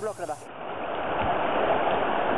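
Steady rush of river water, growing slowly louder, after a brief voice at the start.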